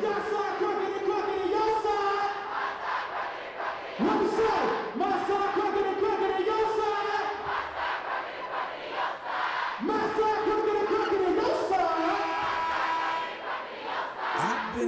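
College basketball student-section crowd yelling together in long held shouts; each one swoops up and then holds, and new ones start about four, five and ten seconds in.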